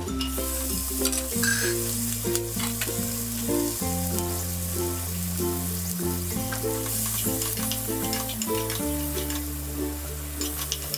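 Cumin, garlic and green chilli sizzling in hot oil in a non-stick kadai, then cubed potato and green capsicum stirred in with a spatula, with light scraping clicks; the sizzle thins out near the end. Background music with a steady bass line plays under it.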